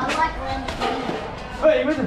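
Boys' voices talking, too indistinct to make out words, with music faintly underneath.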